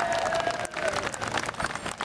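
Audience clapping as the grass dance song ends, its last long held note fading out within the first second.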